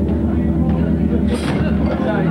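Rock band playing live on electric guitars and bass, holding a loud, steady, droning chord, with a brief high splash like a cymbal about one and a half seconds in.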